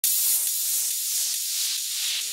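Synthesized white-noise hiss opening a psytrance track. It is mostly high-pitched, with almost no low end, and starts abruptly.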